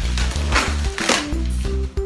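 Background music with a steady bass line, over which come two short scratchy rasps about half a second apart, about a second in: packing tape or paper being pulled off a small cardboard box.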